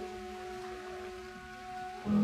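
Orchestral music in a soft passage: a few notes held steady as one quiet sustained chord.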